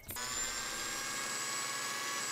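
A small electric motor in a kitchen appliance starts abruptly and runs with a steady, even whine.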